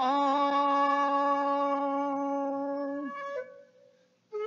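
A male Japanese folk singer holds one long, steady note at the end of a phrase, with a flute sounding the same tune an octave above. The voice stops about three seconds in, the flute trails off a moment later, and the sound fades to near silence at the end.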